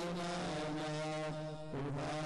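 Devotional aarti music: the hymn sung in long held notes over a steady drone, the pitch moving to a new note near the end.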